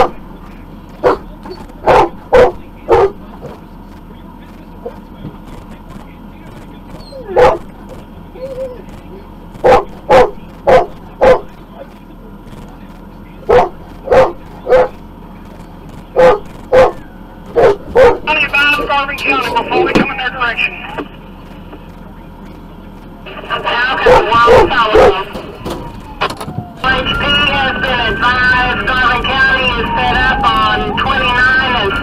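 A dog barking, single barks and quick runs of two to four, repeated through the first half. In the second half the sound turns into longer, denser stretches.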